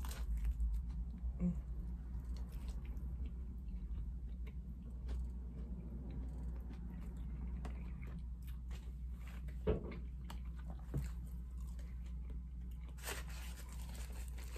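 A person biting into and chewing a crispy-coated spicy fried chicken sandwich, with faint crunching and scattered small clicks of chewing.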